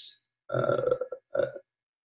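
A man's voice: a short hiss of an 's' at the start, then two short, steady hesitation sounds like 'uh' before he falls silent.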